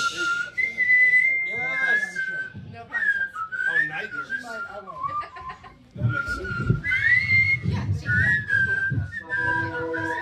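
Electric guitar playing a slow, high, whistle-like melody line that slides and bends in pitch. The low end of the band comes in louder about six seconds in, and a steady held chord joins near the end.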